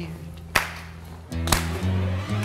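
Line-dance music with a group of dancers clapping their hands together on the beat: one sharp clap about half a second in, then the music's beat returns with a second clap about a second and a half in.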